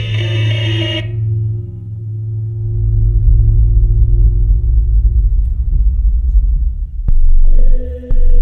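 Improvised drone music: a steady low hum over deep rumble with held middle tones. A bright cluster of higher tones fades out about a second in. A sharp click near the seven-second mark is followed by a loud new band of higher tones.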